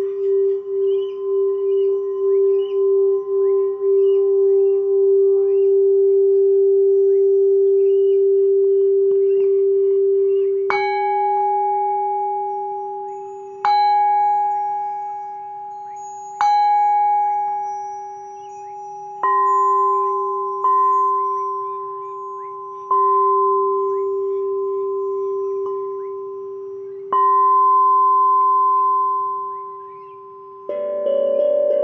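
Singing bowl played with a wooden mallet. First it is rubbed around the rim, its ringing tone swelling with a pulsing waver and then held steady. Then it is struck seven times, a few seconds apart, each strike ringing out and fading.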